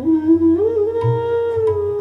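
Bansuri bamboo flute playing an Indian classical melody: a note glides up about half a second in and is held, sliding down a little near the end, with low tabla strokes underneath.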